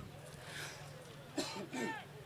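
Faint voices in the background and a cough about one and a half seconds in, over a steady low hum.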